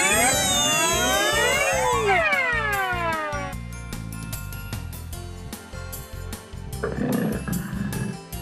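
Children's background music with a steady beat. In the first few seconds a shimmering magic sweep of many tones glides down and up. About seven seconds in comes a tiger's roar lasting about a second.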